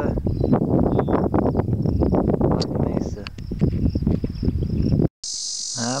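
Wind buffeting the microphone, with rustling and handling knocks over a faint, steady, high insect trill. About five seconds in, the sound cuts off abruptly and a loud, steady, high-pitched insect chorus takes over.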